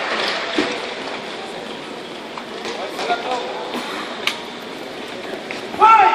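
Arena crowd background: indistinct voices and general murmur around a fight cage, with a few light knocks. Just before the end, a loud steady pitched tone starts abruptly.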